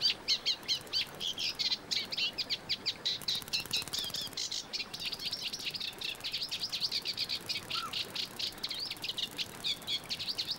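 A small songbird singing a rapid, continuous chattering song of short high chirps, several a second. One brief lower note comes about eight seconds in.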